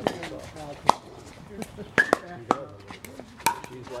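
Pickleball rally: paddles hitting the hollow plastic ball with sharp pops, about six at irregular intervals, the loudest close together about two seconds in. Quieter voices sound underneath.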